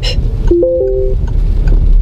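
The Citroën C4 Grand Picasso's voice-command prompt beep: a short electronic chime, about half a second long, that steps up from one low note to a higher two-note tone, signalling that the system is ready to listen. Under it runs the steady road noise of the moving car inside the cabin.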